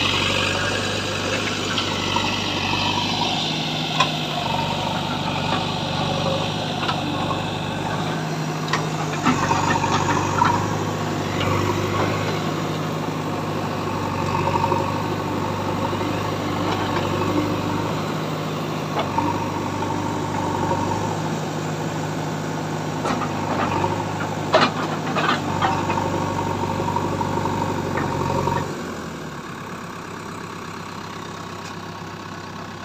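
JCB 3DX backhoe loader's diesel engine running steadily, its pitch stepping up and down under changing load as the machine drives through soil and digs with its backhoe bucket. A few sharp knocks come from the working arm and bucket, loudest about two-thirds of the way in. Near the end the engine settles to a lower, quieter speed.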